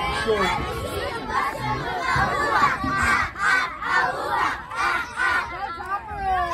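A group of young girls shouting a cheer together, their high voices overlapping, settling into rhythmic shouts about two a second in the second half.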